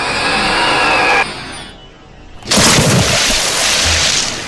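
Cartoon Godzilla's exaggerated ASMR-style mouth and breath sounds: a long breathy hiss close to the microphone, then after a short pause a louder, rougher rasping blast that runs on to the end.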